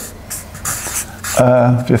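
Marker pen writing on a paper flip chart: a few quick scratching strokes in the first second or so.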